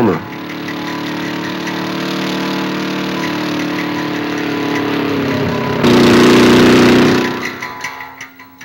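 Motorcycle engine running steadily, its pitch creeping slowly up; it turns suddenly louder about six seconds in, then fades away near the end as the bike rides off.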